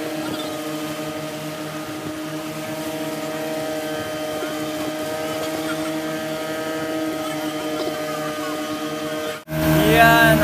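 A fishing boat's engine running steadily under way: a constant drone with a few steady tones. It cuts out abruptly near the end.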